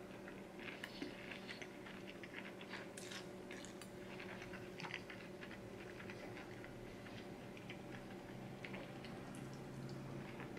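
A person chewing a mouthful of noodles mixed with pickled gherkin, close to the microphone: soft wet clicks and small crunches, faint throughout, over a steady low hum.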